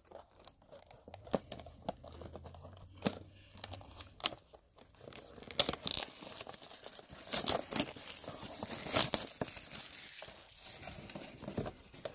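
Plastic shrink-wrap being torn and crumpled off a trading-card box: irregular crinkling, tearing and small cracks, with louder bursts around the middle and again after about seven seconds.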